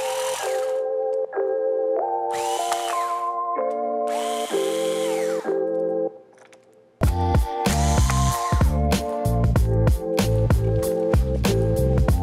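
Background music, with a cordless electric screwdriver running in three short bursts in the first half as it backs out screws, its motor pitch rising as it spins up. After a brief dip to near quiet around six seconds in, the music returns louder with a steady beat.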